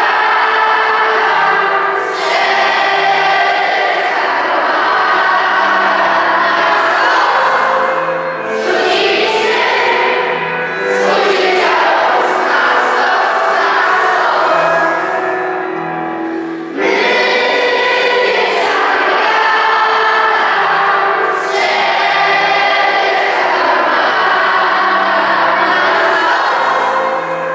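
A group of schoolchildren singing together, with low accompanying notes beneath the voices. The song runs in phrases with short breaks about every six to eight seconds.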